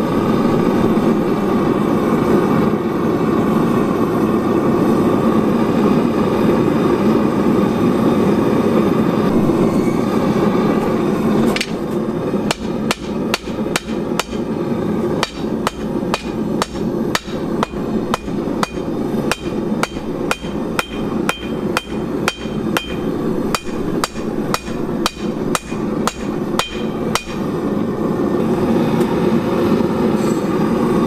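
Propane gas forge's burner running steadily. About eleven seconds in, a hammer starts striking red-hot steel on an anvil, a quick, even run of about two or three blows a second that lasts some fifteen seconds. The anvil rings in the later blows, and the forge keeps running under and after the hammering.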